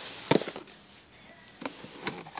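A sharp tap about a third of a second in, then soft rustling and a faint click: a boxed craft paper punch in its cardboard packaging being handled and moved.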